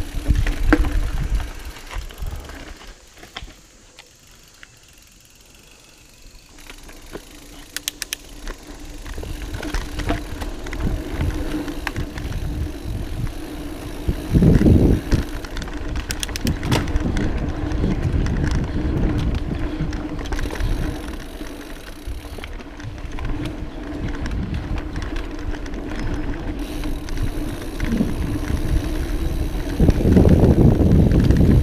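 Mountain bike rolling along a dirt singletrack, heard from a camera mounted on the bike: tyre rumble and wind on the microphone, with rattles and knocks from the bike over bumps. The sound drops low a couple of seconds in, then builds back up, with a loud jolt about halfway through.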